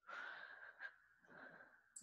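Near silence with faint breathing close to the microphone: a soft exhale over the first second and an inhale shortly before speech resumes.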